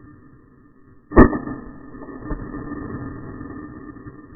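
A single rifle shot about a second in, followed about a second later by a fainter knock.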